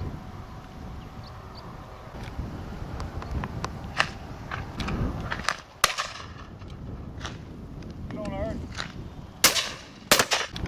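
Game shotguns firing at driven partridges: a dozen or more shots at irregular intervals along the line, most of them distant, with a few nearer, louder reports, the loudest about six seconds in and near the end.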